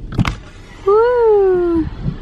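A short knock, then a single drawn-out, high-pitched vocal "ooh" that rises a little and then slides down, lasting about a second.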